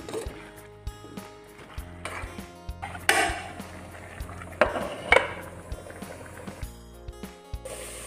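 Background music with a steady low tone, over which a spatula scrapes and knocks against an aluminium kadai as mutton and potato chunks are stirred, with a few sharper clanks about three and five seconds in.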